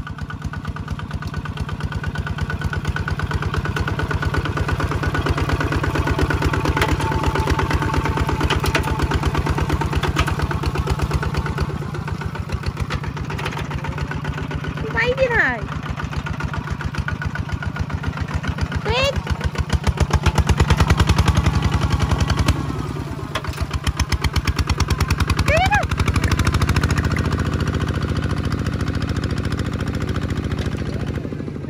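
Two-wheel walking tractor's single-cylinder diesel engine chugging steadily under load while ploughing a wet paddy. It gets louder for a couple of seconds around the middle.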